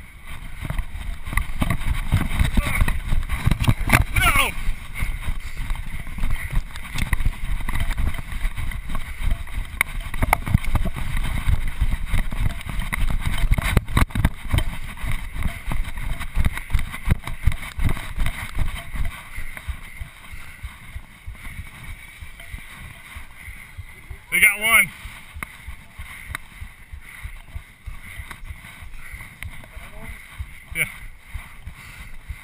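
Heavy wind rumble and jolting thumps on a body-worn GoPro camera's microphone while the wearer runs on a dirt track, easing off after about 19 seconds as the pace slows. A voice calls out briefly about 4 seconds in and again near 25 seconds.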